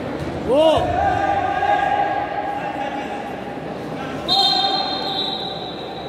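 Futsal match in a sports hall: shouting voices and ball thumps, with a long, steady, high-pitched whistle starting about four seconds in.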